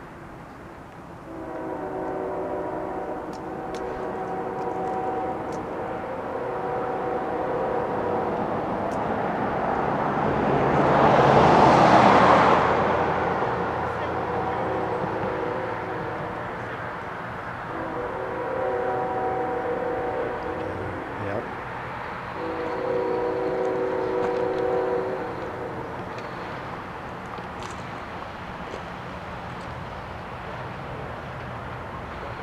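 Distant multi-note horn of an approaching CSX freight locomotive, sounding a series of long steady blasts with short breaks between them. Around the middle, a louder rush of noise swells and fades over about three seconds.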